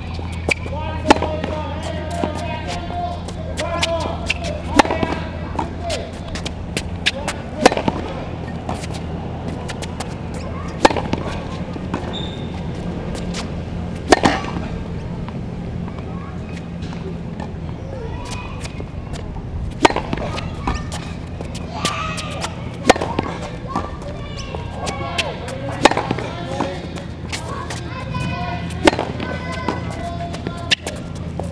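Tennis ball struck hard by a racket in a baseline rally: a sharp pop about every three seconds, with fainter bounces and returns in between. A steady low hum runs underneath.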